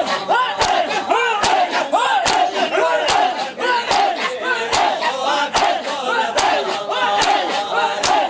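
A crowd of men doing matam, striking their bare chests with open hands in unison in a steady beat of about two and a half slaps a second. Loud massed male voices call out between the strikes.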